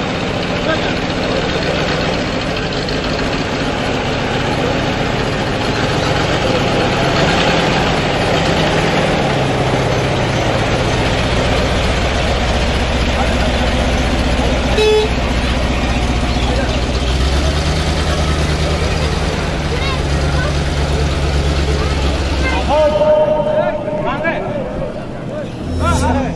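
Old GAZ-53 truck engine running, its low rumble growing stronger about halfway through, with horn toots and people's voices over it.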